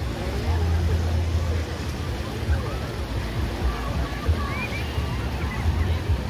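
Busy beach ambience: many people's voices chattering and calling at a distance, over small lake waves washing onto the sand. A low rumble of wind on the microphone runs underneath.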